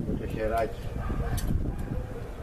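A man says a single word, then a small metal shotgun part clicks twice as it is handled, over a low wind rumble on the microphone.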